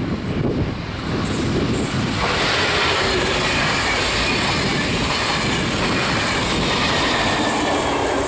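NS DDZ double-deck electric multiple unit passing at speed, its wheels running on the rails. The sound starts as a low rumble and grows much louder and fuller about two seconds in as the train reaches the microphone, with a faint high whine running through it.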